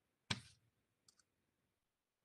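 A single short click about a third of a second in, then a couple of faint ticks a second in; otherwise near silence.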